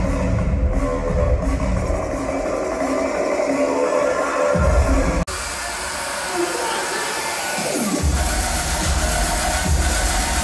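Loud electronic dance music from a live DJ set over a concert sound system. The heavy bass drops out for a few seconds, there is a brief break about five seconds in, and the bass comes back about eight seconds in after a falling sweep.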